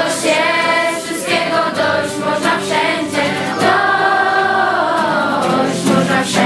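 A group of young voices singing a song together, with one long held note in the middle.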